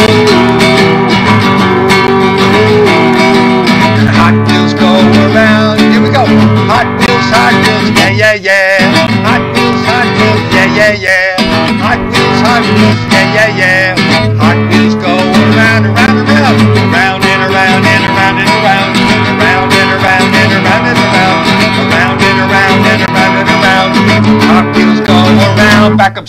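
Acoustic guitar strummed steadily in a children's sing-along song, with wordless singing over it that wavers in pitch in the middle seconds.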